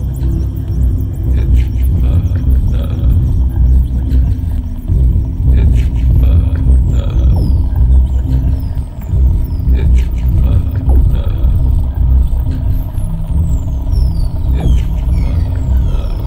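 IDM electronic music with a heavy, dense bass and scattered clicks. High falling sweeps come in about six seconds in and again near the end.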